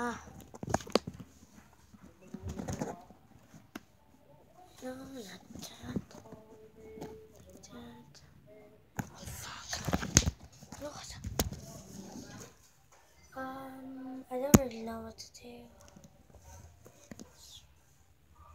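A child's voice making a few short wordless sounds, between knocks and rubbing of a camera handled close to its microphone. A sharp knock stands out about three-quarters of the way through.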